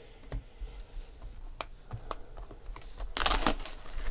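Hands handling a boxed pack of trading cards in its clear plastic wrap: scattered light clicks and taps, then a short burst of plastic crinkling a little past three seconds in, the loudest sound.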